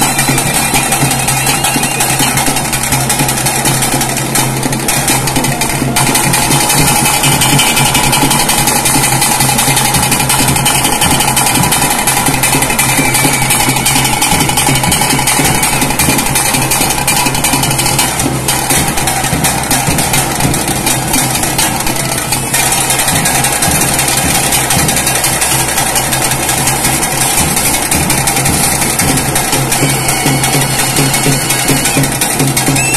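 Live temple festival music: rapid, continuous drumming with a steady held tone over it, loud and unbroken.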